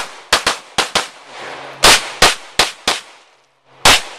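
Pistol fired in a rapid string of about nine shots: two quick pairs, then four shots about a third of a second apart, a brief pause, and one more near the end.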